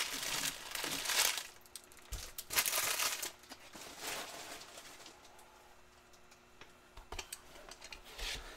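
Foil Panini Prizm basketball card pack wrappers crinkling in the hands in several bursts, then going quieter, with a few light taps on the table near the end.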